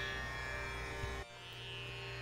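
Quiet background instrumental music: steady sustained drone tones that dip quieter just past halfway.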